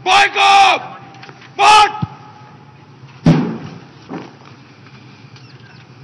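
A parade officer shouts two drawn-out drill words of command. About three seconds in, a massed drill movement lands together in one sharp crash that rings out briefly, followed by a smaller thud a second later.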